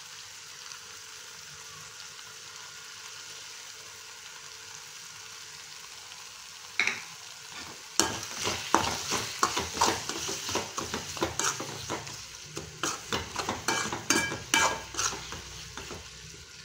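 Onion and tomato masala sizzling in oil in an aluminium kadai, a steady frying hiss. After a single knock about seven seconds in, a metal spatula scrapes and knocks against the pan over and over as ginger-garlic paste is stirred in.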